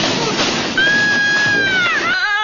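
Cartoon slapstick fall: a noisy clatter and slosh, then a long high-pitched wail held steady that bends down in pitch near the end.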